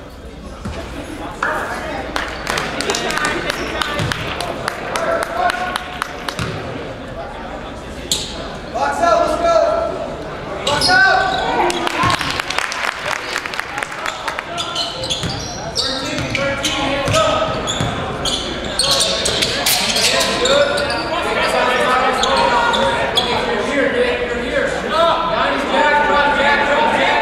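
A basketball bouncing and dribbled on a hardwood gym floor, in repeated short knocks, with players' and spectators' voices in a large gym.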